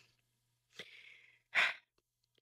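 A woman's breathing between sentences: a faint exhale about a second in, then a short, sharper breath near the end.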